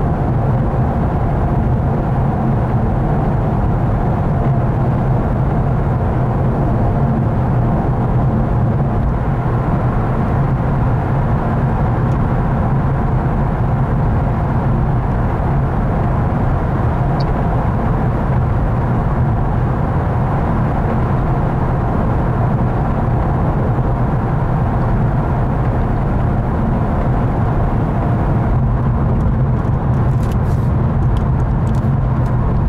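Steady road and engine noise of a moving car heard from inside the cabin: an even, low drone with no sudden events.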